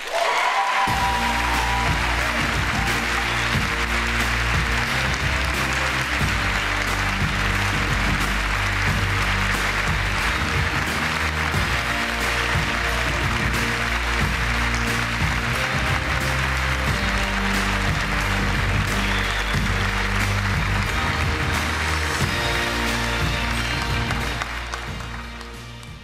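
A large audience applauding over loud music with a moving bass line; both fade near the end.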